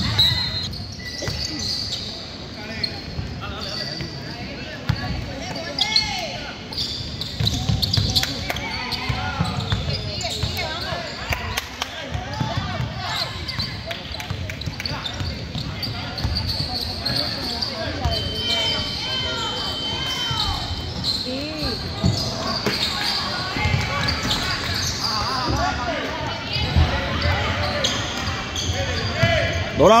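Basketball game in a gym: a ball dribbling and sneakers squeaking on the court, under steady crowd chatter and shouts in the echoing hall. A steady high tone sounds for a few seconds about two-thirds of the way through.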